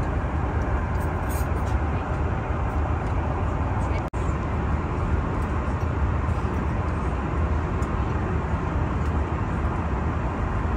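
Steady in-flight cabin noise of an Airbus A330: a deep, even rumble of engines and airflow heard from inside the cabin. It cuts out for an instant about four seconds in.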